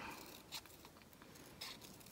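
Small scissors snipping thin black paper: two faint, short snips, about half a second in and again a little after a second and a half.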